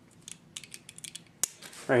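Utility knife's blade slider clicking as the blade is moved, a run of small clicks, then one sharp click about one and a half seconds in.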